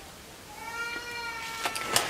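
A domestic cat meowing once, a long drawn-out meow that falls slightly in pitch, followed by a couple of light clicks near the end.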